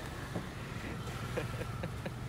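Steady low hum of street traffic, with a few brief, faint vocal sounds over it.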